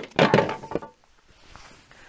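Clatter and knocks of a LiftMaster swing-gate operator arm's open casing being picked up and handled, a burst of clunks in the first second that then dies away to quiet.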